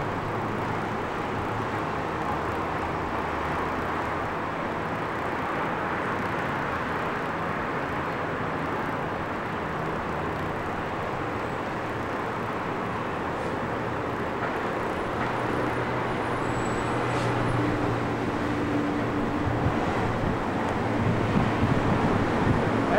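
Steady road traffic noise rising from a main road below. A heavier vehicle's engine grows louder over the last several seconds.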